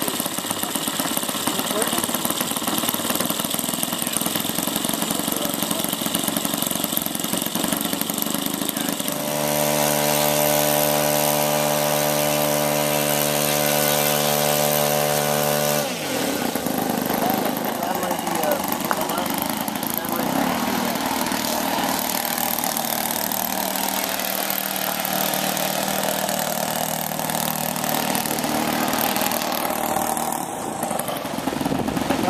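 Model-airplane YS four-stroke glow engine running on the ground. From about nine seconds in it holds one steady pitch for several seconds, then the pitch drops and the sound changes abruptly around the middle. After that it runs at a lower, steady note.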